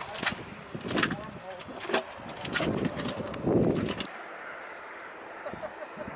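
A boiling geothermal mud pot bubbling, with irregular pops and low gurgling bursts, and faint voices over it. About four seconds in it gives way to a quieter, steady hiss.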